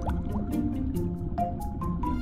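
Bubbling and dripping of air bubbles rising under water from a scuba diver's exhalation, with short rising blips that fade in the first half-second, over background music with sustained notes.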